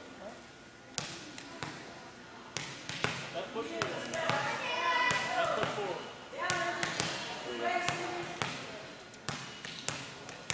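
Volleyball bounced on a hardwood gym floor, a few separate sharp knocks ringing briefly in the hall, with voices calling out in the middle.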